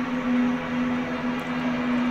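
A steady low drone, one held tone with a faint hiss behind it, unchanging throughout.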